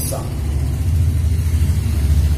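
A loud, steady low rumble with no clear pitch, growing a little stronger about a second in.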